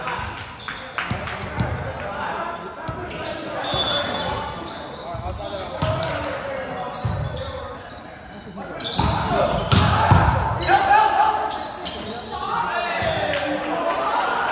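Volleyball game play in an echoing gym: players' voices calling out over repeated ball hits and bounces, loudest about nine to eleven seconds in.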